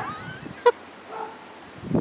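A baby's short high-pitched vocal sounds: a gliding squeal at the start, a sharp brief squeak about two-thirds of a second in, and a faint softer cry a little later. Rustling in the snow comes back near the end.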